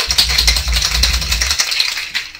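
Metal cocktail shaker being shaken hard, its contents rattling rapidly and continuously, with a low rumble under it for the first second and a half.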